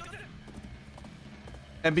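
Soccer anime episode's soundtrack playing low: faint dialogue at the start and a few light taps during match play. A man says a single word near the end.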